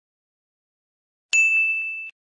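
Dead silence, then about a second and a half in a single bright bell-like ding: one high ringing tone, cut off abruptly after under a second, typical of a chime sound effect added in editing.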